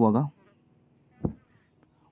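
A man's voice finishing a spoken question, then a single short, low thump a little over a second later.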